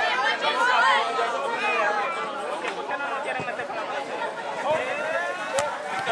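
Football players and onlookers chattering and calling out, several voices overlapping at once, with one sharp knock near the end.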